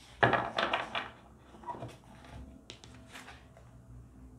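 Tarot cards being handled on a table: a quick run of soft slaps and rustles in the first second, then a few lighter taps and rustles.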